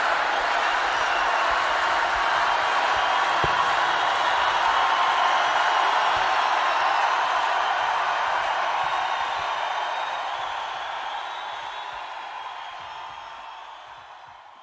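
Large concert crowd cheering and applauding, a steady wash of crowd noise that fades out over the last several seconds.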